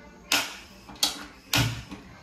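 Three sharp clacks of cookware being handled on a kitchen counter; the third, about a second and a half in, is heavier, with a low thud.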